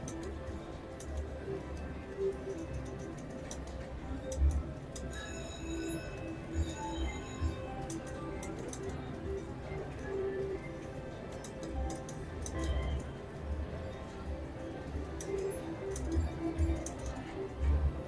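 Casino slot-floor sound: electronic slot machine music and chimes, with ticks from a three-reel mechanical slot machine as its reels spin and stop over several spins.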